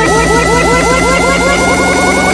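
Electronic dance remix in a build-up: a short rising synth sweep repeats quickly and speeds up, over held synth tones that slowly rise in pitch.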